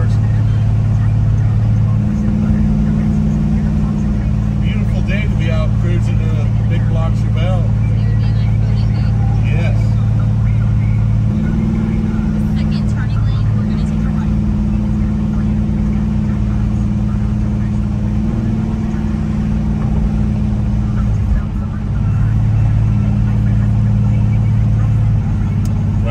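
The big-block 454 V8 of a 1970 Chevelle SS 454 running under way, heard from inside the cabin: a steady low engine note whose pitch steps up and down a few times as the throttle and speed change.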